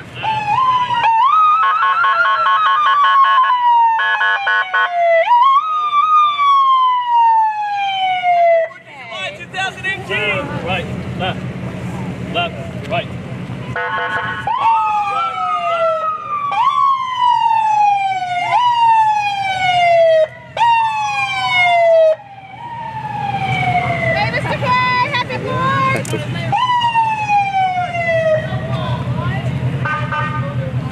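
Emergency vehicle siren wailing in repeated sweeps, each rising quickly and then falling slowly, about every one and a half to two seconds, with a low engine rumble underneath in the second half.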